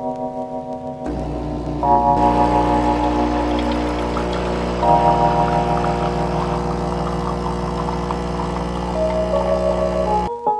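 Background music with steady chords, over which an espresso machine's pump starts up about a second in and runs with a steady low hum and hiss while espresso streams into glass cups.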